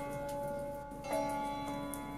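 Sitar music: a plucked sitar note rings on and fades, and a new note is struck about a second in.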